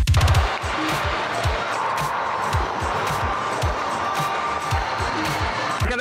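Electronic intro music with a steady, deep kick-drum beat under a dense synth bed.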